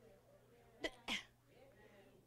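A woman's short breathy vocal sounds in a quiet pause: two quick huffs about a second in, the second with a falling pitch.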